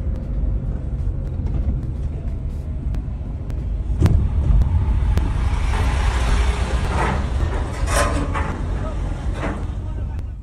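Heavy truck hauling a lowboy trailer at close range, as picked up on a phone: a deep, steady engine drone with road noise. There is a sharp knock about four seconds in, and a louder, hissier stretch in the second half.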